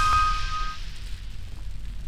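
The tail of a channel's logo sting fading out. A bright ringing tone dies away within the first second, over a fading airy whoosh and a low rumble.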